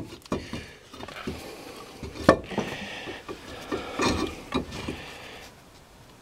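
Hands working a brake caliper bracket and its rubber-booted slide pins: scattered light metal clicks and knocks with some rubbing, and one sharper click a little over two seconds in.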